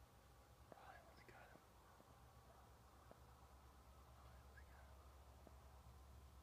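Near silence: faint outdoor ambience, with a brief faint sound about a second in and a few faint ticks.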